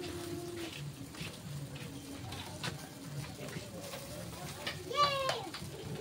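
Faint voices in the background, with a short higher-pitched call from a voice about five seconds in.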